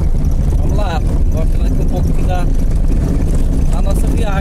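Car driving on a dirt road, its engine and tyres making a steady low rumble heard from inside the cabin.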